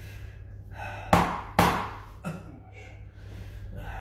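A mallet striking a wooden peg held against a person's back, three knocks: two loud ones half a second apart about a second in, then a softer one. Short gasping breaths come between the strikes.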